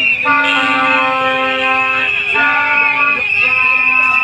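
Plastic vuvuzela horns blown in three long, loud blasts, one after another, over crowd noise.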